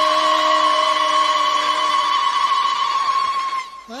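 Voices holding one long, loud note at the close of a sung line in a Berber group chant. A high steady note rides over it. The lower held voices fade about two seconds in, and the high note cuts off near the end.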